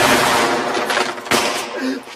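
Rapid automatic gunfire sound effect, the shots fading away, with one sharper shot a little over a second in.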